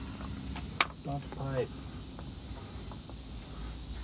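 Steady faint high chirring of insects. A short muffled voice comes in about a second in, just after a single sharp click.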